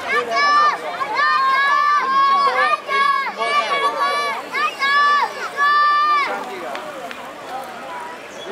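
High-pitched spectator voices shouting long, drawn-out cheers at passing bicycle racers, one call after another for about six seconds, then dying down.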